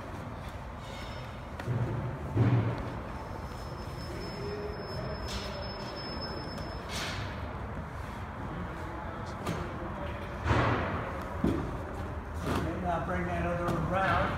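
A heavy tarp being pulled and worked over a tall load. There are a couple of thumps about two seconds in and a louder thump around ten seconds in, with a voice talking near the end.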